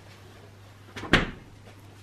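Refrigerator door swung shut, a single sharp thud about a second in.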